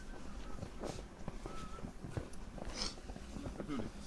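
Footsteps crunching in fresh snow, a few separate crunches with the loudest about three quarters of the way through, along with faint voices of people walking nearby.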